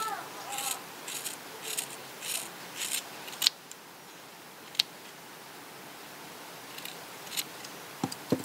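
Scissors snipping through the strands of a yarn tassel to trim its ends even. A run of about five quick snips comes first, then two sharp clicks of the blades, and two more snips near the end.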